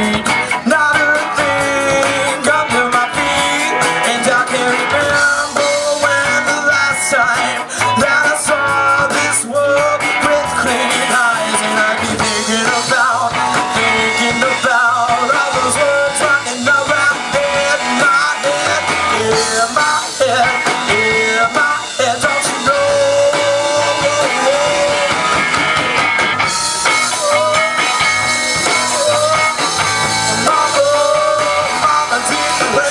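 Live rock band playing: electric guitars over a drum kit, with cymbals ringing throughout and a wavering melodic line on top.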